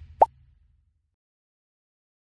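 End-card logo sound effect: a low rumble dies away, and about a quarter of a second in a single short, rising plop sounds.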